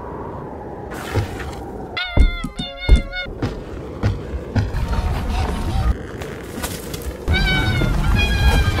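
Background music under high, wavering cartoon vocal cries, a short run about two seconds in and another starting near the end, with a few light knocks between.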